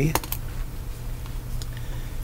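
A few quick, sharp computer clicks just after the start and a couple of fainter ones later, over a faint steady low hum.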